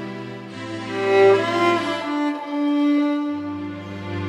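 Solo violin playing a slow, sustained melody over a backing accompaniment of low held bass notes. The bass drops out briefly in the middle and comes back near the end.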